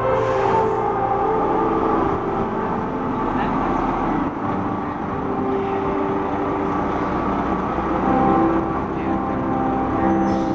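Live amplified concert sound heard from a distance in the open air: slow sustained sung and piano notes of a ballad, half buried under a steady wash of background noise.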